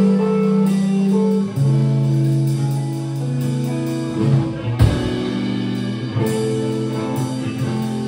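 Live instrumental band music: electric guitar run through effects holding long sustained notes over bass guitar and a drum kit played with sticks, with a heavier drum hit about five seconds in.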